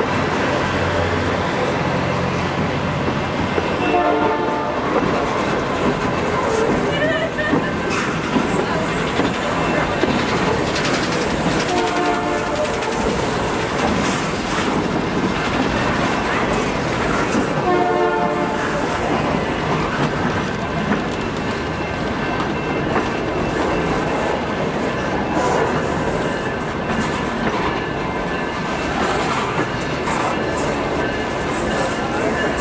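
Canadian Pacific Holiday Train boxcars rolling slowly past on the rails, a steady rumble of steel wheels with clickety-clack over the rail joints. A few short pitched sounds rise over the rumble about 4, 7, 12 and 18 seconds in.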